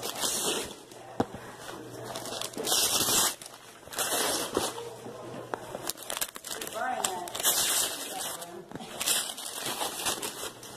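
Wrapping paper crinkling and tearing in several short bursts as presents are unwrapped.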